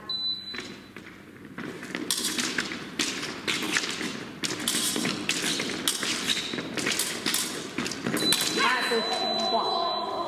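Épée fencers' rapid footwork: a fast, uneven run of sharp stamps and taps on the metal piste during the bout. About eight seconds in, the electric scoring machine gives a long, steady high beep, registering a touch, with voices over it.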